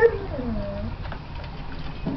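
Bearded Collie puppies vocalizing in play: a sharp yelp right at the start, then a short whining cry that falls in pitch and levels off within the first second.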